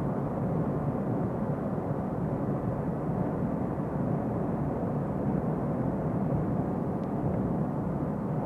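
A car driving along a road: a steady rumble of engine and tyre noise heard from inside the cabin.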